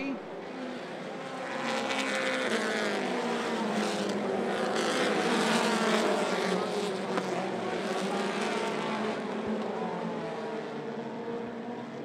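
A pack of mini stock race cars running on a dirt oval, several engine notes rising and falling in pitch together as the cars work through the turns. The sound builds over the first couple of seconds and is loudest around the middle.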